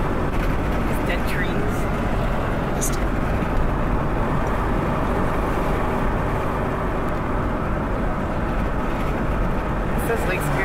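Steady road and engine noise inside the cabin of a vehicle driving on a paved road.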